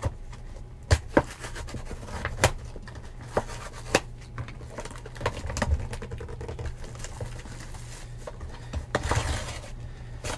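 Clear cellophane shrink-wrap being picked at and torn off a sealed trading-card box. Scattered sharp clicks and taps of fingers and nails on the wrap and box come first, then a stretch of crinkling plastic near the end as the wrap is pulled away.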